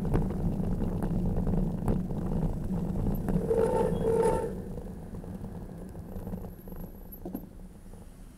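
Car horn giving two short beeps in quick succession about halfway through, over a steady rumble of traffic and road noise.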